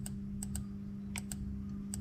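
Light, sharp clicks in quick pairs, four pairs in two seconds, over a steady low hum.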